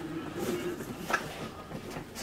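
A few soft knocks and handling noises as a bulky drone carrying case is lifted from the floor, with a faint strained hum from the lifter at the start.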